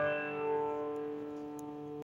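Gold Fender Squier California Series electric guitar on its middle pickup, a chord left ringing and slowly fading, with no new strum.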